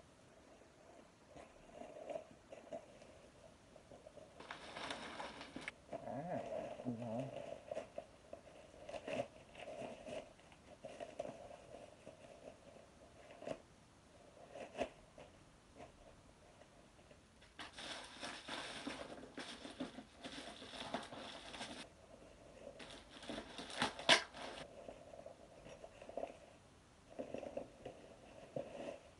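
Clear plastic packaging being crinkled and torn open by hand, in a short burst and then a longer stretch of crackling about two-thirds of the way through, with scattered clicks and taps between.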